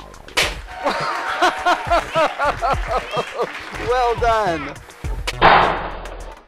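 A water-filled rubber balloon bursts about five and a half seconds in: a sudden loud splash of water in a plastic tub that dies away within about half a second. It is the balloon blown up past its limit by water pressure from a raised bucket.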